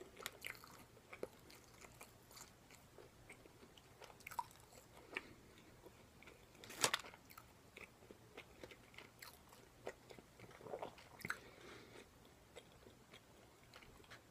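Close-miked chewing and biting of food, quiet, with scattered crisp crunches and mouth clicks; the loudest bite comes about seven seconds in.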